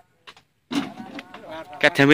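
People talking: after a brief near-silence broken by a couple of small clicks, voices start about two-thirds of a second in and get louder toward the end.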